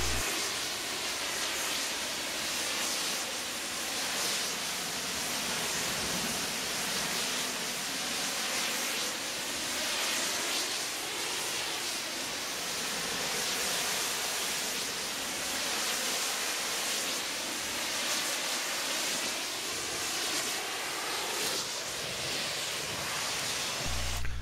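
Pressure-washer wand blasting high-pressure rinse water, without detergent, against a semi-trailer's rear door: a steady hiss that rises and falls slightly as the spray moves across the panel.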